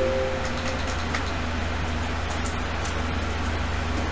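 Steady low electrical hum with hiss. A held tone fades out in the first second, and there are a few faint keyboard clicks.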